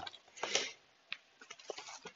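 Faint handling of a comic's packaging: a soft rustle about half a second in, then a few light, scattered ticks.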